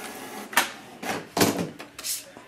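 Canon Pixma MG6120 inkjet photo printer finishing and ejecting a 4x6 photo print: three or four short clunks and scrapes from its paper feed, about half a second apart.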